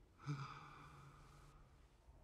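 A man's soft sigh: a breathy exhale that starts suddenly a quarter of a second in and trails off.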